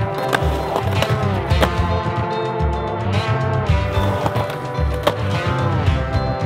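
Music with a steady beat and gliding notes, with skateboard sounds mixed in: wheels rolling on concrete and a few sharp board knocks.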